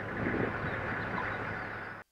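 Armoured military vehicles in a convoy driving along a dirt road: a steady rumble of engines and road noise.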